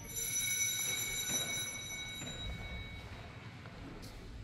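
Small altar bell rung once, marking the consecration at Mass. Its high, clear ring starts sharply and fades away over about three seconds.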